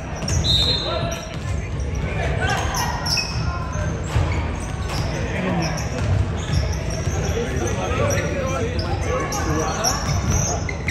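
Basketballs bouncing irregularly on a hardwood gym floor, several at once, echoing in the large hall, over voices.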